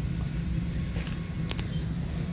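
Outdoor background noise: a steady low rumble, with a single sharp click about one and a half seconds in.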